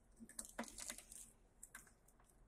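Faint, irregular light clicks and rattles of plastic pinch clamps on rubber tubes being handled and adjusted.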